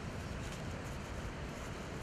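Steady outdoor background noise: a low rumble under an even hiss, with no distinct handling sounds.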